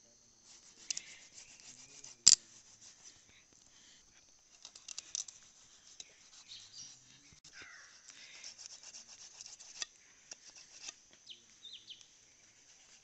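A knife blade scraping along a whole fish's skin in short, scratchy strokes as the fish is cleaned, with a sharp click about two seconds in.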